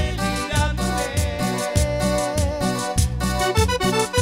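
Live cumbia band playing an instrumental passage with no vocals: a held, wavering lead melody over bass and a steady dance beat.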